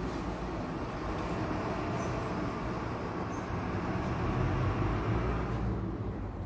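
Steady low rumbling background noise with a faint hiss, with no distinct events.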